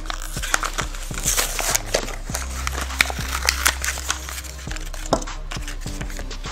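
Cardboard-and-plastic blister package of a Hot Wheels car being torn and peeled open by hand: irregular crinkling, crackling and tearing, with sharp snaps about three and five seconds in. Background music with a steady bass runs underneath.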